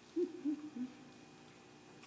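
A person humming three short, low 'mm-hmm'-like sounds of assent, each a little lower than the one before, in the first second.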